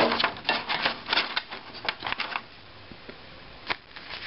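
A quick run of short scratchy strokes and rustles from a pen and hand working on paper, then quieter, with a single sharp tap near the end.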